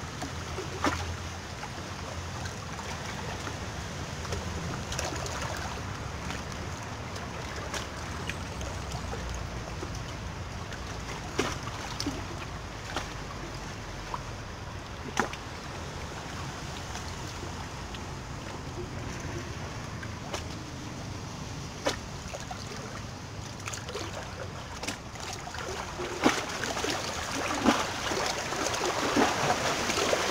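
Sea water washing against a rocky shore: a steady rushing noise with occasional sharp clicks, with a low rumble under it in the first part. The water grows louder and busier near the end.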